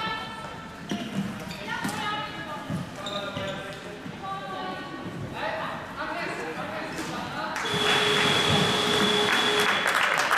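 Floorball play on an indoor court: sneaker squeaks, knocks of sticks and ball, and voices ringing in the hall. About seven and a half seconds in, spectators start clapping and cheering, with a steady high whistle-like tone held over it for about two seconds.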